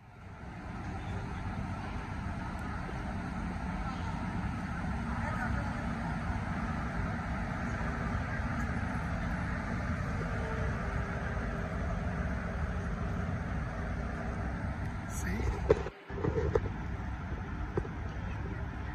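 Steady low rumble of railway-station noise with a faint steady hum underneath. It breaks off abruptly for a moment near the end, and then a man's voice comes in.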